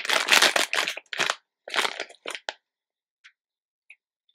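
Plastic snack bag being torn open and crinkled: a long rustling burst in the first second, then a few shorter crinkles that stop about two and a half seconds in.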